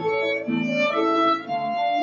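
Violin and piano playing together live: a bowed violin melody over a piano accompaniment of changing chords.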